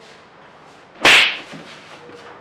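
A single sharp crack about a second in, loud and brief with a short fading tail.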